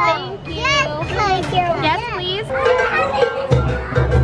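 A small child's high-pitched voice, babbling and squealing with big swoops in pitch. About three and a half seconds in, music with a steady beat starts.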